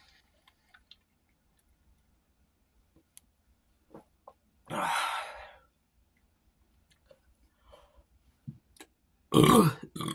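A man burps once, about five seconds in, after drinking down the last of a can of carbonated beer, with a few faint clicks before it. Just before the end he clears his throat loudly.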